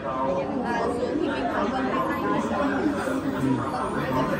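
Several people chattering at once: overlapping, indistinct voices with no single clear speaker.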